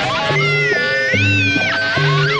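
Music: a song with sustained low bass notes, a stepping mid-range melody and high tones that slide up and down.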